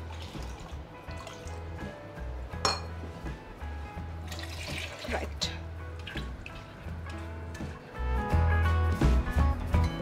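Water poured from a glass measuring jug into a pot of soup, with a spoon stirring in the pot, over background music with a steady bass line that grows louder near the end.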